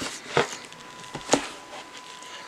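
A few light wooden knocks and taps from a hardcover book being set on a wooden stand and opened: one about half a second in, then two close together a little after the middle.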